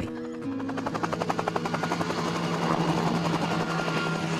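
Helicopter rotor beating in rapid, even pulses as it flies in low, slowly growing louder, with a held music chord underneath.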